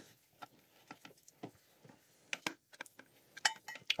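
Scattered light clicks and clinks of a plastic auto-siphon and its tubing being handled and set down into a large glass jar, plastic tapping on glass, about nine small taps at uneven intervals.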